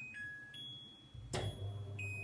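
Electronic beeps from a kitchen range hood's touch control panel as a button is pressed. A little over a second in, there is a click and the hood's motor starts with a low steady hum.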